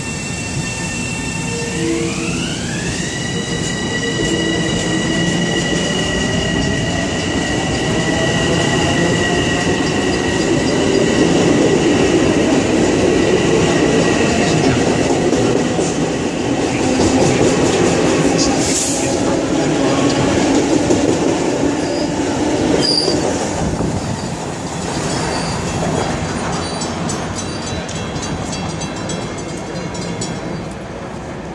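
Electric multiple-unit commuter train pulling out of the station. Its motors give a whine that rises in pitch about two seconds in and then holds steady, while the rolling noise of the wheels builds as the cars pass close by and eases off near the end.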